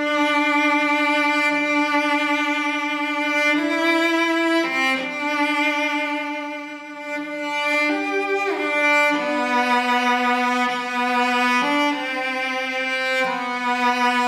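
Cello fitted with a set of Thomastik-Infeld Versum Solo strings, played with the bow: a slow melody of long held notes, with a downward slide between notes a little past the middle.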